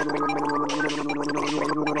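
Cartoon sound of a drink being slurped through a straw, in quick repeated bursts, over a light jingle with a held low note and short notes stepping up and down.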